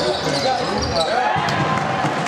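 A basketball game on an indoor hardwood court: the ball bouncing on the floor among players' and spectators' voices in the hall.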